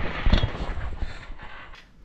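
A thump about a third of a second in as a rider and trick scooter crash onto a trampoline mat in a fall from a failed trick. It is followed by about a second of jostling noise that fades away.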